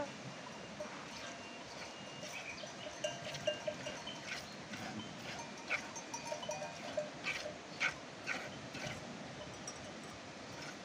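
Bells on sheep in a flock clinking irregularly, with a few sharper clanks between about three and nine seconds in.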